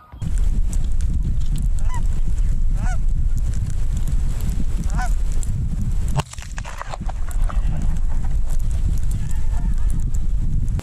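Wind buffeting the microphone in a steady low rumble, with a few short Canada goose honks over it, about two, three and five seconds in.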